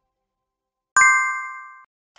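Notification-bell ding sound effect: one bright chime struck about a second in, ringing and fading out within under a second.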